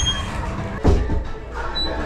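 Restaurant entry door thumping once about a second in, as it is pushed open while walking through, over background music.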